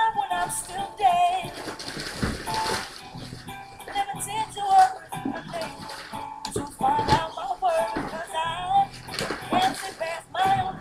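A recorded song playing, a singing voice wavering in pitch over its accompaniment.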